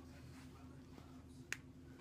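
Near silence with a faint steady low hum, broken by a single sharp click about one and a half seconds in.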